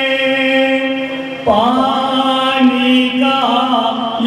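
Men's voices chanting a marsiya, an Urdu elegy for Imam Husain, in a slow, drawn-out melody. A long held note gives way about one and a half seconds in to a louder new phrase with a wavering pitch.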